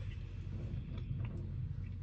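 A pause with no words: a steady low hum and faint room noise, with a few faint ticks.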